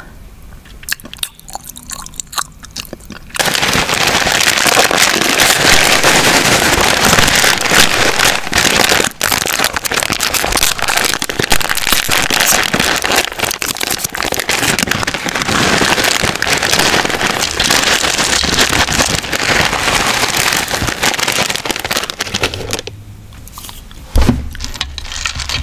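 A plastic cereal packet being crinkled and handled right at the microphone: a loud, dense crackle that starts suddenly about three seconds in and stops about a second before the end. Only faint small clicks come before it.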